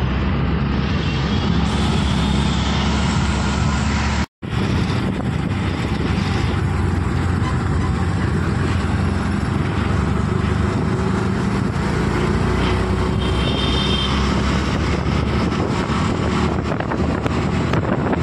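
Moving auto-rickshaw: its engine running with steady road and wind noise from the street traffic around it. The sound cuts out for a moment about four seconds in.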